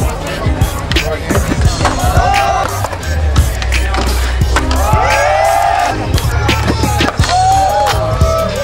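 Music with a steady bass line mixed with skateboard sounds: wheels rolling on concrete and repeated clacks of boards popping and landing.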